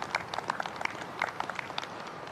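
Light, scattered clapping from a few spectators: a dozen or so separate, uneven hand claps.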